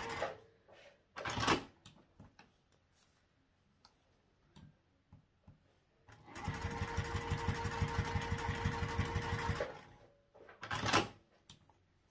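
Domestic electric sewing machine stitching a seam: it stops just after the start, then runs again for about three and a half seconds in the middle with a fast, even needle beat. Two short noises of the fabric being handled come about a second in and near the end.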